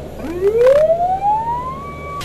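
Ambulance siren heard from inside the cab, its tone rising in pitch over about a second and a half and then holding one high note near the end, over the low hum of the moving vehicle.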